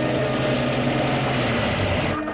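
A car engine running: a dense rushing noise over a low steady hum, breaking off abruptly near the end.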